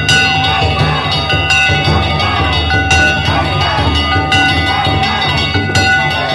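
Danjiri float's festival band (hayashi) playing: hand-struck gongs ringing with a loud strike about every second and a half, over a pounding taiko drum. A crowd shouts around the float.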